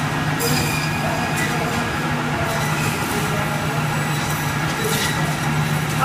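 Steady machinery din of a meat-cutting room: several meat band saws running, with a constant low hum.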